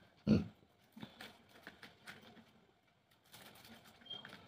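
Paper rustling and crinkling as a folded, cut paper sheet is opened out by hand, with a short thump about a quarter second in and scattered small rustles after.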